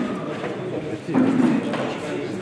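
Indistinct chatter of a group of people seated at tables, no single voice clear, getting louder a little past the middle.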